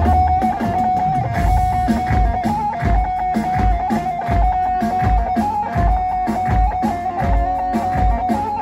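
Electric bağlama (saz) playing a fast, ornamented halay melody in a steady stream of picked notes, over a heavy, deep drum beat.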